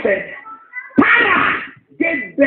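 A preacher's raised voice: two loud, drawn-out cries without clear words, the second and longer about a second in.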